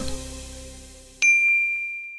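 The tail of background music fades out. About a second in, a single bright ding is struck and rings on with a clear high tone, dying away slowly: an edited transition sound effect.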